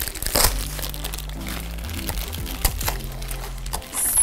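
Crinkling and tearing of Funko Mystery Minis blind-box packaging, a small cardboard box and a wrapper, as two are opened by hand, with scattered sharp crackles. Soft background music with low sustained notes runs underneath.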